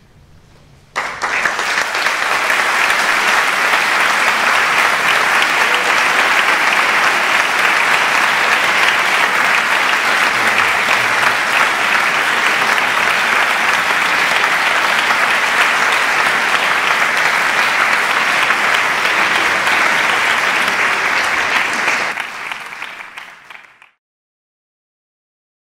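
Audience applauding: the clapping breaks out suddenly about a second in, holds steady, and dies away over the last two seconds.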